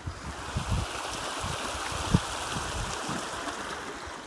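Small stream running steadily, a continuous rushing of water, with a few low thumps and one short knock about two seconds in.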